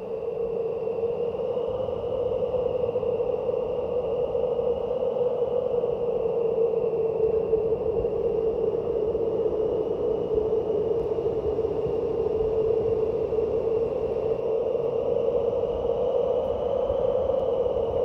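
A sustained, unchanging eerie drone from a suspense film soundtrack: one steady low hum with fainter high tones held above it.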